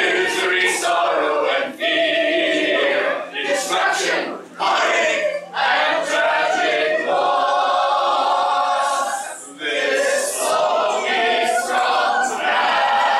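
A group of voices singing a cappella in chorus, phrase after phrase with short breaks between them and one long held note partway through.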